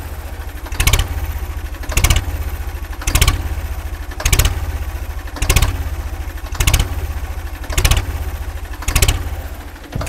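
Ford 3600 tractor's three-cylinder diesel engine idling, heard at the outlet of its upright exhaust stack: a steady low exhaust rumble with a louder pulse roughly once a second.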